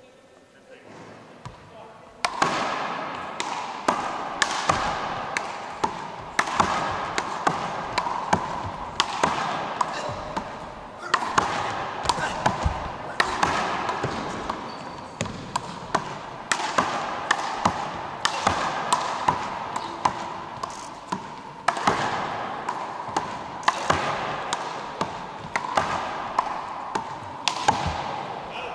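Rubber big-ball handball being slapped by hands and smacking off the wall and the wooden gym floor during a rally, sharp hits about one to two a second that echo around the hall. The rally starts about two seconds in, after a quiet pause.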